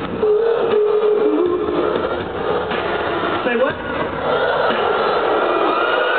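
Live arena concert audio with the band's beat largely dropped out: a held vocal note in the first second or so, then dense crowd noise of screaming and voices, recorded with a muffled, low-fidelity sound.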